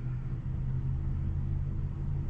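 Low, steady rumble inside the cabin of a Tesla electric car as it backs slowly out of a parking space under Full Self-Driving, with a faint steady hum above it.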